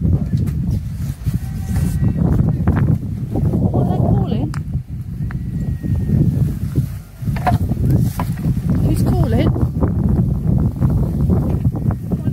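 Wind buffeting the camera microphone, a heavy low rumble, with brief indistinct voices about four and nine seconds in.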